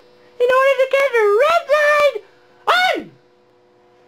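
A man yelling loudly at a high pitch, several drawn-out cries, the last one sliding down in pitch, to raise his voice enough to trigger a sound-activated light.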